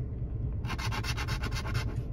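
A coin scratching the coating off a scratch-off lottery ticket in rapid back-and-forth strokes, starting just under a second in.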